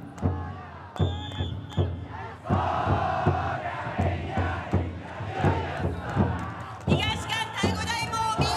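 Taiko drum inside a taikodai festival float beaten in a steady rhythm, while the team of bearers shouts a loud group chant that swells about a third of the way in. Shrill high calls join in near the end.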